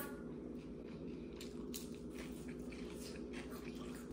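Hot sauce squeezed from a plastic squeeze bottle: faint squishing and a few soft clicks over a steady low room hum.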